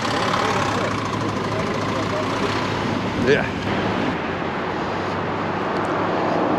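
Steady noise of heavy road traffic, with cars passing on a busy road.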